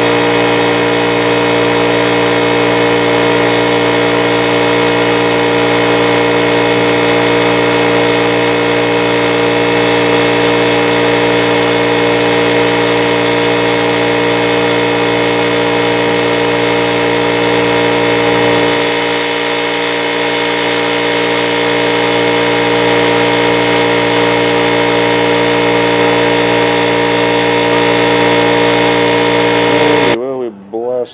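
A power sander running steadily without a break, its low hum dipping briefly about two-thirds of the way through.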